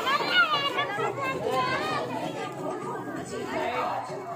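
Voices chattering, several people talking at once with no clear words.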